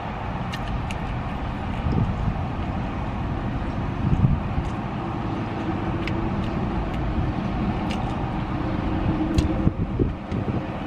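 Steady low rumble of a vehicle heard inside a car cabin, with a faint hum joining in for a few seconds after the middle. A few faint clicks of chewing sound over it.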